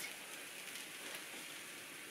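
Corn tortillas sizzling gently in a thin film of oil in a hot stainless steel pan, a steady faint crackle.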